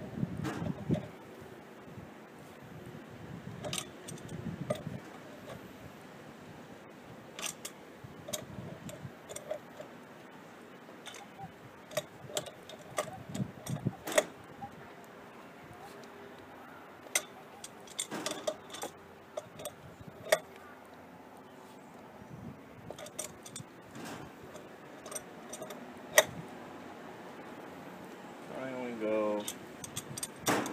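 Wrench and pliers clicking and clinking against a brass ball-valve fitting as it is turned and tightened onto a threaded pipe joint, in scattered sharp metallic clicks with handling knocks between them.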